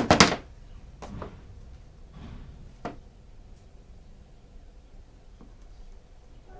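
Chainsaw parts being handled on a plywood workbench: two loud knocks at the start, then a few lighter single clicks and clunks spread over the following seconds.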